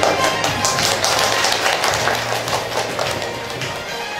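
Background music playing under a round of audience applause, dense clapping that thins out toward the end.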